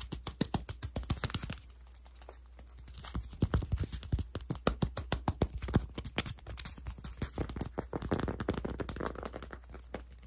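Fast fingernail tapping and scratching on a small handheld object: quick sharp taps, a brief lull about two seconds in, then tapping again that turns into denser scratching and rubbing in the second half.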